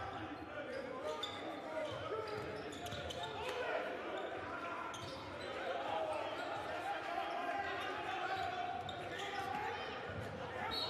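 Court sound in a basketball gym with no crowd noise: a basketball being dribbled on the hardwood, with players' voices calling out on the court.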